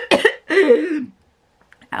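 A woman coughing a few times, sharp and harsh, ending in a short voiced splutter: she has choked on her own saliva.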